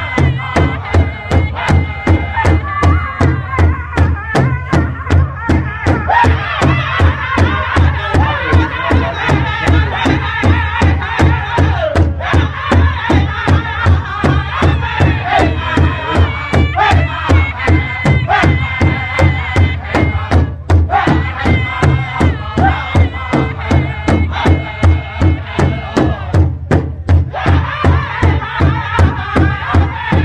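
Powwow drum group singing in high, strained unison voices over a large hide-covered drum struck together in a steady, even beat. The singing breaks off briefly a few times while the drumbeat carries on.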